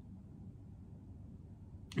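A pause in a man's talk: faint, steady low room tone, with his voice starting again at the very end.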